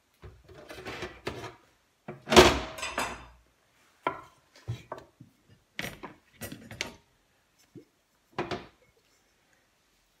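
Kitchen handling sounds as a stainless steel dish is set on a wooden chopping board and aubergine slices are laid into it: one loud knock a little over two seconds in, then a string of lighter taps and clicks.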